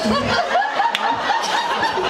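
People laughing and chuckling after a joke, several voices overlapping, with one brief click about a second in.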